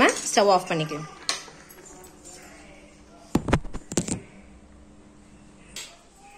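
A steel ladle knocking against a nonstick cooking pan of soup: a quick cluster of four or so knocks about three and a half seconds in, and one faint knock near the end.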